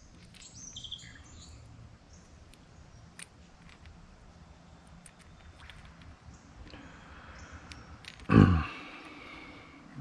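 Small birds chirping over quiet creek ambience, the chirps clustered in the first second. About eight seconds in comes one short, loud vocal sound that falls in pitch.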